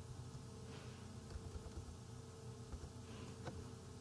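Faint, steady electrical hum and buzz from the recording chain, with a single faint keyboard click about three and a half seconds in.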